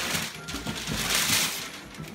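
Paper gift wrapping being ripped and rustled off two cardboard boxes at once, in uneven rasping swells that peak a little past the middle.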